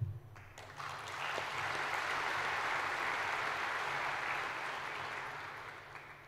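Audience applauding. It swells over the first second or so, holds steady, then dies away near the end.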